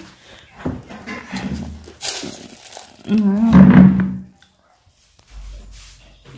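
People's voices, loudest in a wavering vocal outburst lasting about a second, three seconds in, followed by a brief silence.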